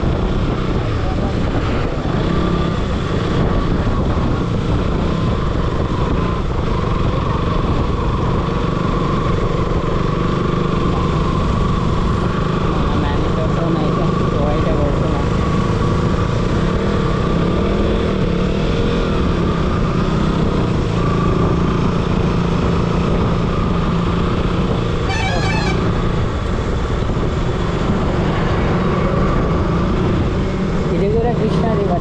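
A KTM sport motorcycle's engine running at a steady cruise, with another motorcycle riding alongside and a steady rush of wind over the microphone.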